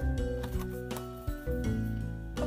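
Background music with sustained notes over a low bass line, with light rustling and clicking as a string of LED lights is pressed down into a wooden frame.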